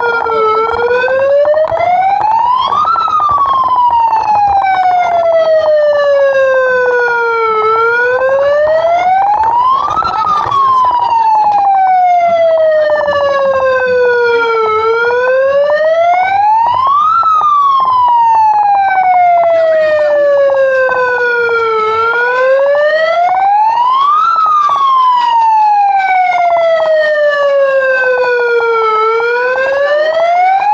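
Handheld megaphone's built-in electronic siren wailing loudly and continuously, close by. Its pitch climbs for a couple of seconds, then slides down more slowly, repeating about every seven seconds.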